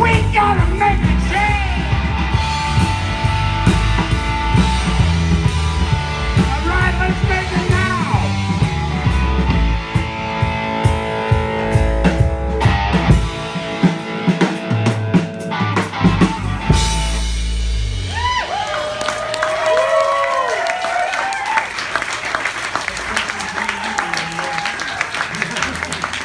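Live rock band playing: electric guitars over a drum kit. About 18 seconds in the drums and low end drop out and the guitars play on alone.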